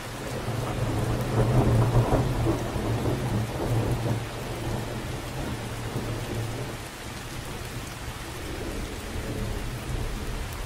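Steady rain falling with a long roll of thunder that starts right at the beginning, is loudest in the first few seconds and fades by about seven seconds in, with a smaller swell of rumble near the end.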